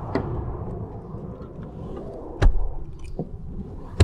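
2021 Ford Escape rear seatbacks being raised by hand, with rustling and handling noise, then a sharp thud about two and a half seconds in and another at the very end as the seatbacks lock upright.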